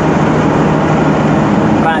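Truck running along a highway, heard from inside the cab: a steady engine hum under continuous road noise.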